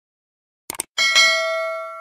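Subscribe-button animation sound effect: a quick double mouse click about three quarters of a second in, then a bright bell ding about a second in that rings on and slowly fades.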